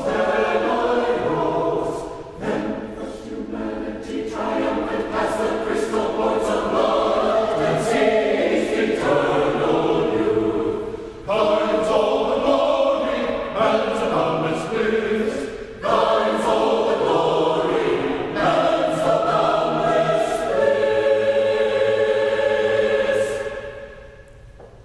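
Church choir singing an anthem in several phrases with short breaks between them. It ends on a long held chord that fades out just before the end.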